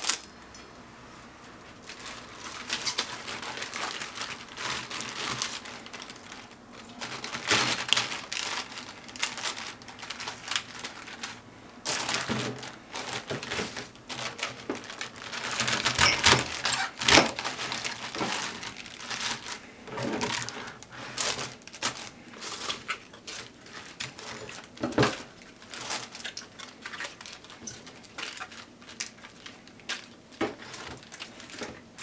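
A kitchen knife cutting through napa cabbage on a plastic cutting board: irregular crisp crunches of the blade through the leaves and knocks on the board. Between the cuts the leaves rustle as they are pulled apart.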